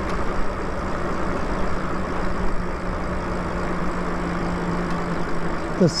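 Steady wind and tyre noise from riding a Lyric Graffiti e-bike on asphalt, with a steady low hum that sinks slightly in pitch.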